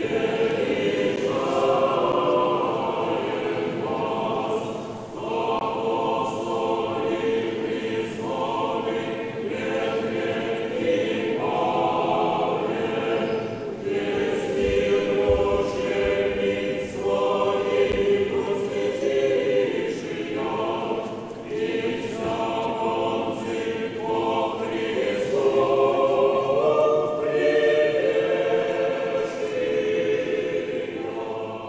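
Church choir singing unaccompanied Russian Orthodox chant, in sustained phrases of a few seconds each with short breaks between.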